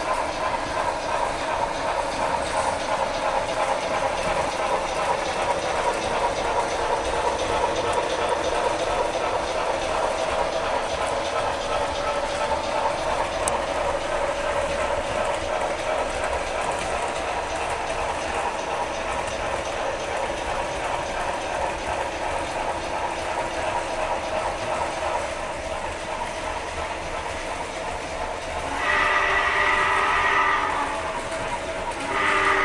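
HO scale model trains running on a layout: a steady motor hum and fast clicking of small wheels over the track. Near the end a sustained horn-like tone with several pitches starts and grows louder.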